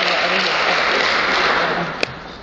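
Live audience applauding, the clapping dying away near the end.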